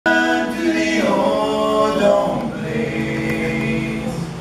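Several voices singing long held notes in harmony, moving to a new chord about a second in, again about two seconds in and once more shortly after, a little softer in the second half.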